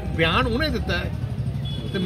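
A man speaking, over a steady low engine hum like a vehicle idling nearby.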